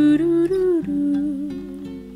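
A voice humming a slow lullaby melody in long held notes over plucked acoustic guitar, one note sliding up and back down about half a second in, the sound fading toward the end.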